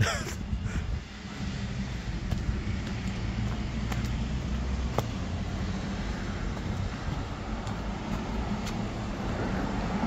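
Steady road traffic noise from a nearby street, a low even rumble of passing and idling cars, with a few faint clicks.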